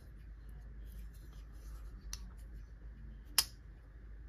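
Small folding knife with a G10 handle being folded closed by hand: faint handling ticks, a light click about two seconds in, then one sharp, loud click about three and a half seconds in as the blade snaps shut.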